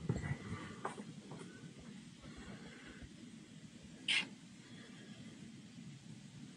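Low workshop room tone with a few faint clicks in the first second and a half, and one short, sharp hiss about four seconds in.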